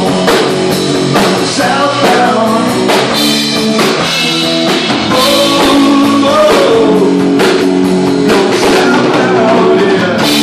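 Live rock band playing loud: electric guitar, bass guitar and drum kit keeping a steady beat.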